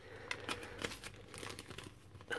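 Thin plastic ziplock bag crinkling as it is pulled open by hand and the clear plastic sprue is drawn out: a run of soft, scattered crackles.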